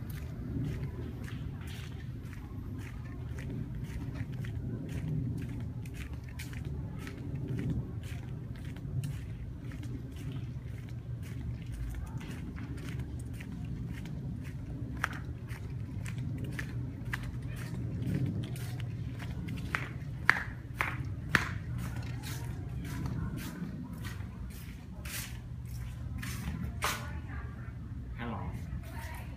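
Footsteps of a person walking on a paved path, an even tread of about two steps a second, over a low steady rumble. A few sharper clicks come about two-thirds of the way in.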